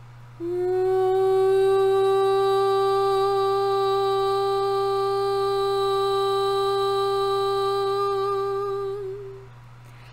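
A woman's voice toning: one long, steady note on a single pitch, sung as part of a clearing of the sacral chakra. It starts about half a second in with a slight upward slide, holds for about eight seconds, and fades out near the end.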